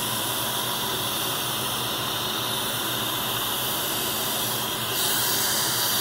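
Dental suction tip running with a steady hiss, which gets brighter about five seconds in.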